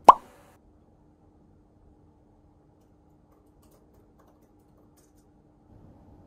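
A single short water-drop-like plop, an edited-in pop sound effect, right at the start, with a faint steady low hum underneath afterwards.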